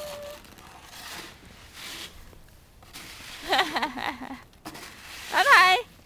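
High-pitched voices: a held vocal sound trails off at the start, short sing-song vocalising follows about halfway through, and a loud call of "come" comes near the end, with faint low noise in between.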